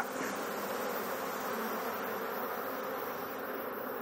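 Honey bees buzzing steadily around an opened hive as a brood frame is lifted out. The colony is stirred up and defensive, which the beekeeper takes as a usual sign that it has no queen.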